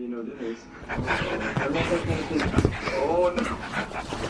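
Pug panting hard, with rustling of the bedding beneath it, and a short pitched vocal sound about three seconds in.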